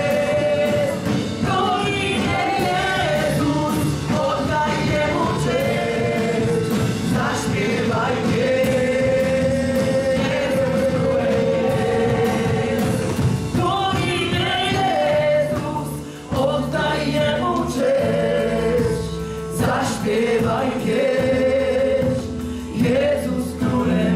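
Live worship band playing a gospel-style song: a male lead voice sings the melody over keyboard, guitar and drums, with other voices singing along.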